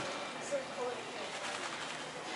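Indistinct distant voices over steady room noise, with a few short rising and falling voice sounds about half a second in.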